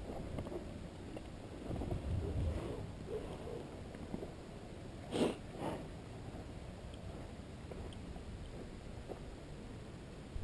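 A horse nosing right at the microphone, with close rustling and two short breathy blows about five seconds in, the second smaller.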